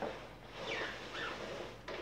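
Black+Decker Airswivel upright vacuum, switched off, being pushed and steered on its swivel neck over a rug: two short high squeaks falling in pitch from the plastic swivel joint and wheels, then a click near the end.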